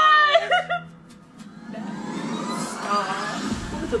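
Two women's high squealing laughter that breaks off within the first second, then a low rumble with a rising whoosh building up from the trailer's soundtrack.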